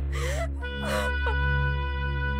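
A woman sobbing: two gasping sobs in the first second and a short whimper just after, over sustained background music with a low drone.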